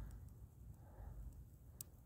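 Near silence from a small twig fire burning over a paraffin-wax candle, with a single faint sharp crackle near the end.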